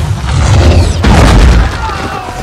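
Film sound-design explosions: deep, heavy booms with a crackling burst of debris about a second in.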